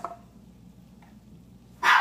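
A domestic dog gives a single loud bark near the end, after a stretch of quiet room tone.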